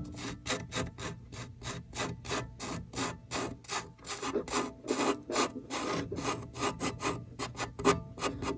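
Amplified violin worked with a quick, irregular run of short, gritty rasping strokes across the strings, several a second, giving scratchy noise instead of clear notes. A faint steady low hum runs underneath.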